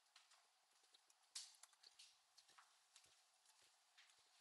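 Near silence with faint, irregular clicks of laptop keyboard typing, the loudest about a second and a half in.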